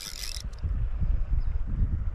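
Fly reel being cranked to wind in line on a hooked fish, its mechanism giving a fast, low rattling whir.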